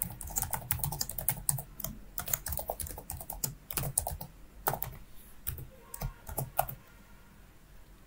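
Typing on a computer keyboard: a quick, irregular run of keystrokes that stops about a second before the end.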